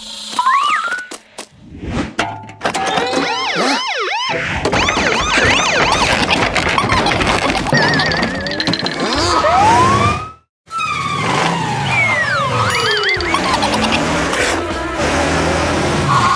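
Cartoon soundtrack: background music under a busy run of springy, sliding sound effects and siren-like wails. It cuts out completely for a moment just after ten seconds.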